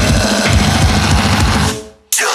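Metalcore band recording with the drum kit to the fore: rapid bass drum hits with snare. The whole band cuts out abruptly just before the end, leaving a brief silence.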